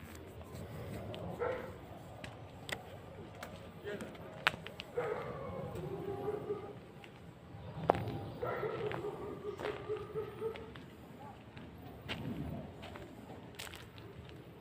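Indistinct voices talking off and on, with scattered sharp clicks and knocks from a handheld phone being carried along a path.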